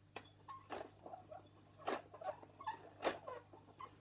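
Plastic teaching clock being handled and its hands turned by hand: an irregular string of clicks and knocks with a few short squeaks.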